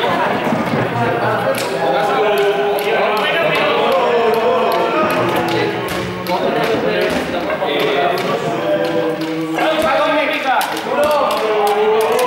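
Many students' voices talking and calling out over one another in a sports hall, with scattered taps and thuds of balls, poles and feet on the floor.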